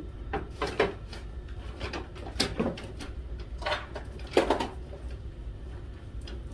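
Rummaging through a paper bag and things on a dresser: a scatter of light knocks, clunks and rustles, the loudest about four and a half seconds in.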